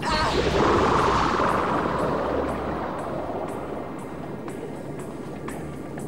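Cartoon soundtrack: a loud rushing sound effect at the start that fades away over a few seconds, under dramatic background music with a light tick about twice a second.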